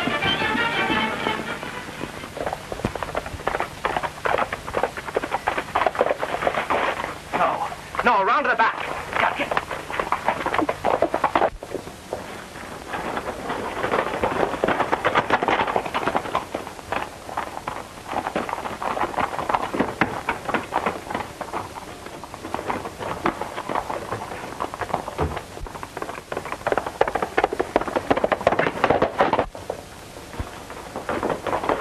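Film soundtrack: background music mixed with a steady clatter of short knocks.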